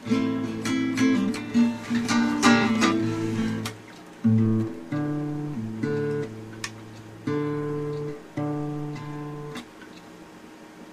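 Acoustic guitar playing an intro on A minor and G minor chords: a run of quick strums for about four seconds, then slower single chords left to ring, about one a second.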